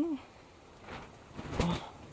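A woman's voice saying two short words, the first with a rising-then-falling pitch, with faint rustling in the pause between them.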